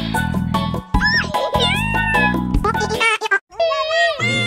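Background music with a bass-and-guitar loop and a few gliding, meow-like cries over it. The music cuts out shortly before the end and a high, wavering wail begins: the banana cat meme crying sound.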